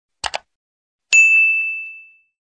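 Subscribe-button animation sound effects: a quick double mouse click, then about a second in a single bright notification-bell ding that rings on and fades away.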